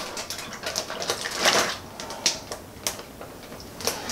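A gallon Ziploc plastic bag crinkling and rustling in irregular small clicks as sliced beef in teriyaki marinade is tipped into it from a bowl, with a louder rustle about a second and a half in.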